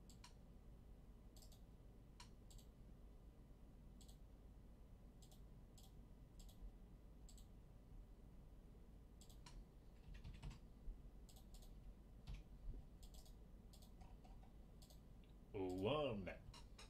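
Faint, scattered clicks of a computer mouse and keyboard at irregular intervals, over a low room hum. A man's voice starts just before the end.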